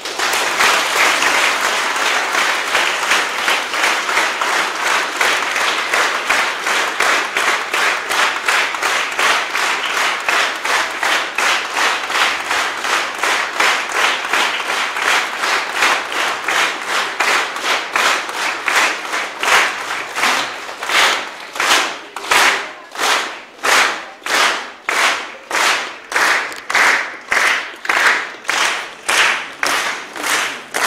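Audience applauding after a choir's song: a dense, loud patter of scattered clapping that, about two-thirds of the way in, settles into rhythmic clapping in unison, a little over one clap a second.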